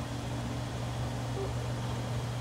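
Steady low hum with a faint hiss, like a computer fan or mains hum picked up by the microphone.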